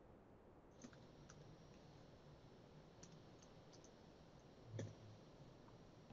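Near silence broken by a few faint, irregular clicks of a computer keyboard and mouse, with one slightly louder soft knock a little before the end.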